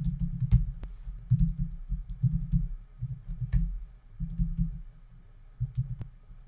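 Typing on a computer keyboard: irregular bursts of keystrokes, each a short click with a dull knock, with a lull of about a second before a last short burst near the end.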